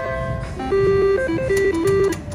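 Double Diamond Deluxe reel slot machine playing its electronic jingle as a new spin begins: a quick tune of short, stepped beeping tones that grows louder in the second half.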